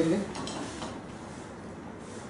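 Folded newspaper pattern piece being opened out by hand: a few short paper crackles in the first second, then faint rustling.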